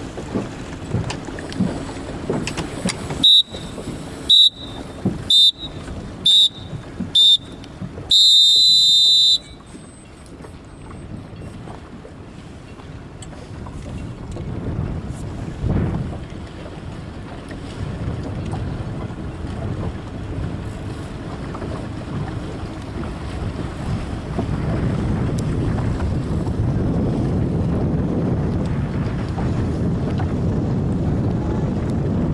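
An electronic countdown timer beeps five times, about once a second, then gives one long beep of about a second, the final seconds of a sailing race start countdown ending on the start signal. Wind on the microphone and the rush of water follow, growing louder.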